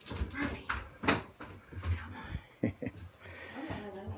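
Soft footsteps on carpeted stairs and floor, with scattered knocks and clicks.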